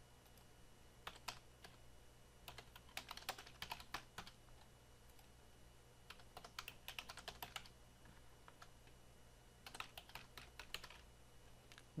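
Faint typing on a computer keyboard: four short bursts of rapid keystrokes, over a low steady hum.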